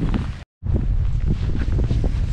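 Wind buffeting a handheld camera's microphone in a low, continuous rumble, cut by a brief dropout about half a second in.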